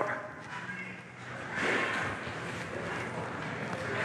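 Low room noise in a large gym hall, with a soft hiss that swells and fades about halfway through.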